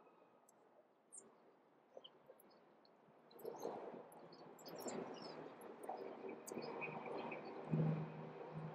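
Outdoor city street ambience: very faint with a few small clicks at first, then a louder, even background of street noise from about three seconds in, with scattered light clicks and a low steady hum near the end.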